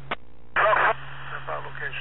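Police radio scanner audio: a short squelch click as a transmission drops, about half a second of gap, then a voice comes back over the radio with a steady hum under it.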